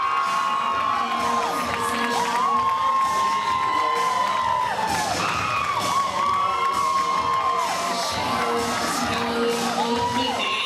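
An audience cheering and shouting, many high voices calling and whooping over one another throughout.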